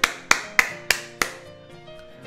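Hand clapping: five sharp claps about three a second, fading out after about a second, over sustained musical notes.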